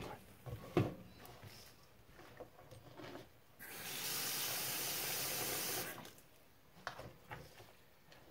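Kitchen faucet running into a bowl in a stainless steel sink for about two seconds, turned on a few seconds in and shut off, with a steady hiss of water. A few faint knocks come before it.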